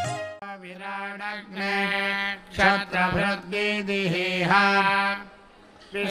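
Vedic mantras chanted in Sanskrit, starting about half a second in after a brief end of instrumental music, with a short pause near the end.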